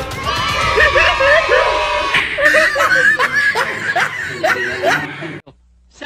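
People laughing, with some voices mixed in, cutting off abruptly about five and a half seconds in.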